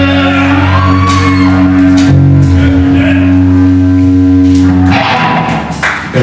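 A live hard rock band holding a sustained guitar and bass chord under repeated cymbal crashes, with a shouted voice rising about a second in; the chord cuts off about five seconds in as the song ends.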